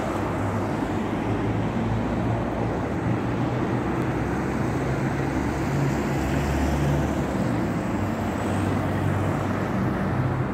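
City road traffic: cars driving past on a multi-lane street, a steady wash of tyre and engine noise with a low engine hum that swells about six to seven seconds in as a vehicle goes by.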